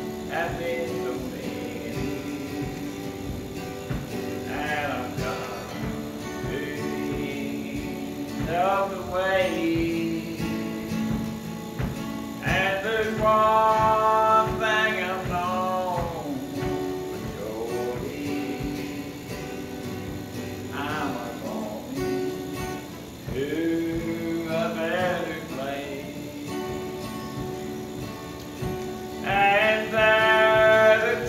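A man singing a slow gospel song in long held phrases over steady instrumental accompaniment, with a louder phrase near the end.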